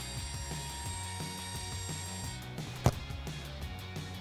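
Background music under a video-tape fast-forward sound effect: a high whine with a mechanical whirr lasting about two and a half seconds, then a single sharp click near the three-second mark.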